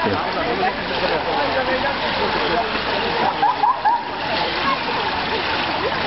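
Swimming-pool ambience: a steady wash of splashing water with scattered voices, a few higher calls about halfway through.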